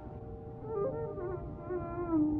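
Quiet passage of Carnatic music in raga Mukhari: a steady drone runs throughout, and a soft melodic line with gliding ornaments comes in about half a second in.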